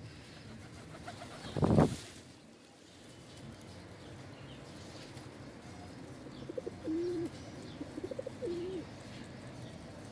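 Feral rock pigeons cooing in short, low warbling notes from about six and a half to nine seconds in. A brief, louder flutter of wings comes about two seconds in.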